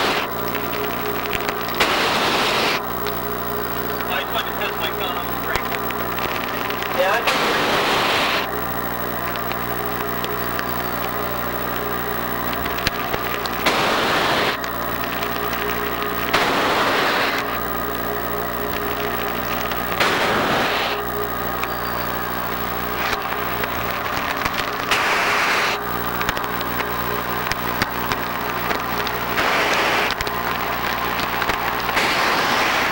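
A diver's breathing heard over a diving radio link: a loud rush of breath about every three to six seconds over a steady electrical hum.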